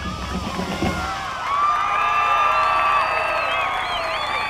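Marching band music with drums cuts off about a second in, and a stadium crowd breaks into cheering and whooping.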